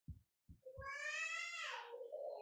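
A single high-pitched, drawn-out call lasting a little over a second. It starts about half a second in, and its pitch drops toward the end.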